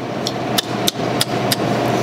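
A run of sharp, evenly spaced clicks or knocks, about three a second, over a steady background hum.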